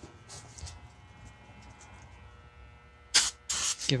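Aerosol can sprayed in two short hisses near the end, a shot of starting fluid to prime a newly fitted Kohler engine before its first start attempt.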